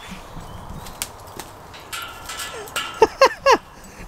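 A dog barking three times in quick succession about three seconds in, short sharp yelps. Before them, quieter rustling and a few light knocks.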